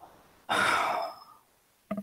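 A person sighing: one breathy exhale, a little under a second long, starting about half a second in and fading out.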